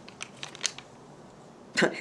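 A few faint, short clicks and crinkles of a small cosmetic sample packet being handled, in the first second, over quiet room tone.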